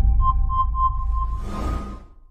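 Countdown intro sound effect: four short electronic beeps at one pitch over a low rumble, then a brief whoosh as it fades out near the end.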